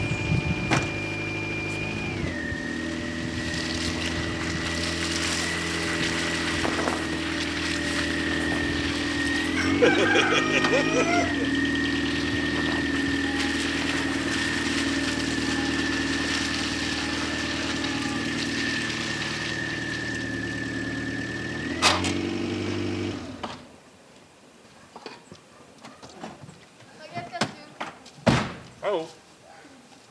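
A car engine running steadily, with a constant high whine above it and a brief waver about ten seconds in; it shuts off suddenly about 23 seconds in, leaving a quiet stretch broken by a few knocks.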